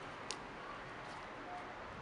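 Quiet outdoor background noise with a single faint click near the start.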